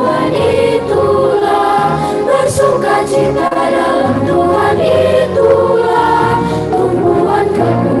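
A children's choir singing together, doing an action song with continuous sung phrases and no pauses.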